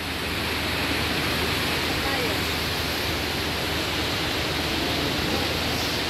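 Water falling in an indoor fountain: a steady, even rush of water that holds unchanged throughout.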